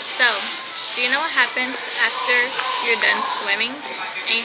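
A woman talking over a steady background hiss.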